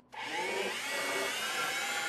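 Commercial countertop blender switched on and blending a krill, flake food and seawater slurry. The motor's whine rises as it spins up in the first half second, then holds steady.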